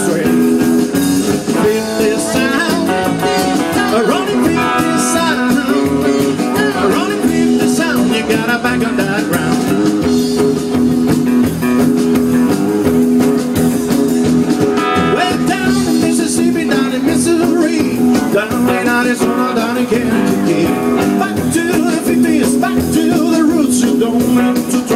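A live fifties-style rock and roll band playing loudly through a PA: electric guitar, slapped upright double bass and drums, with a singer's voice at times.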